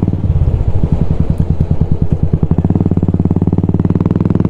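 Royal Enfield Classic 350 single-cylinder engine, fitted with an aftermarket exhaust, running on the move. A little after the start its steady note breaks up into separate, uneven exhaust pulses, then evens out into a steady drone again near the end.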